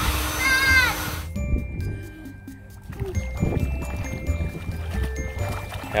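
Electric air inflator running, cut off abruptly about a second in. Background music with light, tinkling notes follows.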